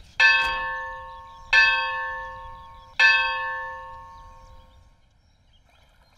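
A temple bell struck three times, about a second and a half apart, each stroke ringing with several steady tones that fade slowly; the last ring dies away about five seconds in.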